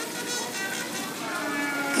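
Quiet background music with faint, distant voices; no distinct event stands out.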